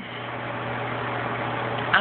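A small motor running steadily: a low hum under an even rushing hiss.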